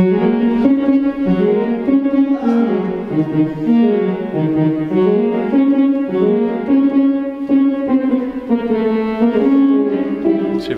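Organ playing a slow melody of sustained notes and chords, each note held at full strength without dying away, the tune stepping up and down over held lower notes.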